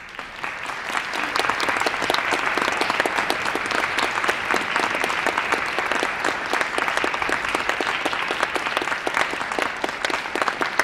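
Audience applauding, many hands clapping together. The applause swells over the first second and then holds steady.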